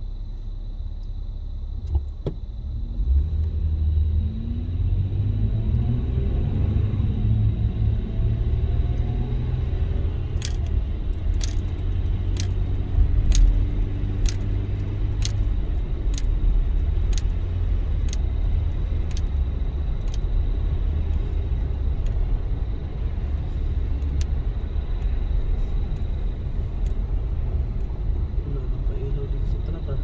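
Inside a car's cabin: engine and tyre rumble on a wet road, with the engine note rising as the car pulls away and speeds up in the first seconds. From about a third of the way in, a turn-signal indicator ticks about once a second.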